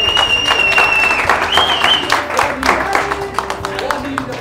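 A group clapping in rhythm along to music, with a high note held for over a second near the start and a shorter one about a second and a half in.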